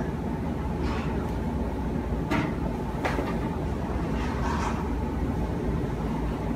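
Chef's knife cutting down through wrapped cheese slices onto a cutting board: a few short, sharp knocks spaced about a second apart, over a steady low background hum.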